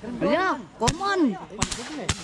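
A single sharp crack of an air rifle shot a little under halfway through, then a short hiss and two quick clicks near the end. A voice rises and falls around them.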